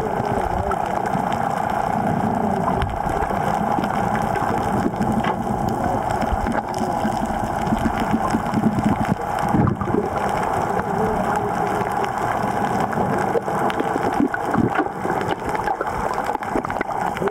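Muffled underwater sound picked up by a camera held below the surface: a steady droning hum with water noise and small crackles.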